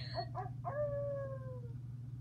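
A small dog gives two short yips, then one long howl that slides slowly down in pitch for about a second.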